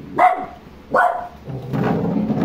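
A dog barking twice, two short sharp barks about a second apart.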